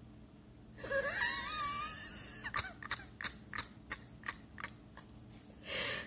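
A woman laughing hard without words: a high, wavering, wheezy squeal, then a run of short breathy gasps of laughter, about three a second.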